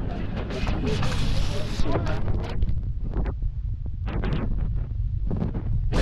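Wind buffeting the camera's microphone with a steady low rumble, broken by rubbing and knocking as the camera is handled and turned around. Faint voices are mixed in.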